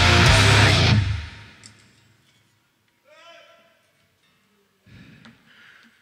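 Heavy metal band with distorted electric guitars and drums ending a song, the last chord cutting off about a second in and dying away. Then it is nearly quiet apart from one short voice call near the middle.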